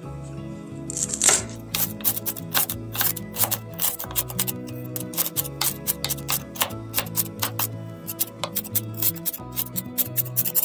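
Chef's knife chopping poblano pepper strips on a wooden cutting board: quick repeated cuts, several a second, starting about a second in, over steady background music.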